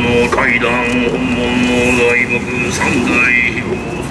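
A man's voice chanting a prayer text in a drawn-out intoning style, holding each note steady for a second or two between short pitch slides.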